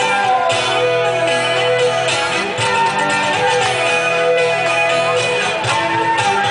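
Live band music with guitar playing, and a melody line that slides down in pitch twice over a steady accompaniment.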